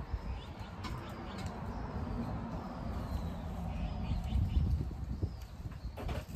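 Leaves and stems of leafy greens rustling and snapping as they are picked by hand, over a low, uneven rumble, with a few faint bird chirps in the background.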